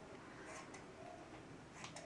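Faint snips of scissors cutting hair, a few times, the clearest near the end.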